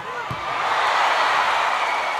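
Arena crowd cheering, swelling about half a second in as a volleyball rally goes on, with a short knock near the start.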